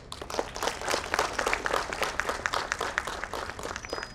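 Audience applauding: dense clapping that starts suddenly and stops near the end.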